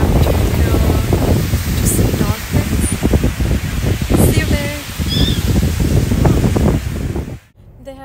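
Strong wind buffeting a phone microphone on a beach, a loud rumbling, gusty rush that stops abruptly near the end.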